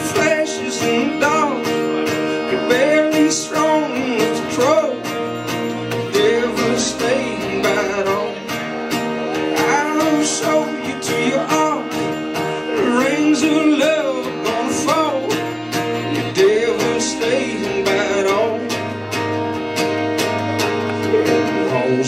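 Acoustic country-bluegrass trio playing an instrumental intro: acoustic guitar strumming, a fiddle carrying a sliding melody and an upright bass underneath.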